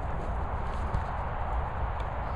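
A large dog moving about on grass close to the microphone, its steps and movements heard as soft, uneven thuds over a steady low outdoor rumble on the microphone.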